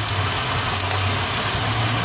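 2000 Chevy Impala's 3.4-litre 3400 V6 idling steadily, a low even hum with the radiator fans not yet running.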